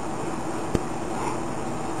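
A single short knock about three quarters of a second in, a slicing knife's blade meeting the wooden cutting board as it finishes a cut through bluefin tuna belly, over a steady background hiss and hum.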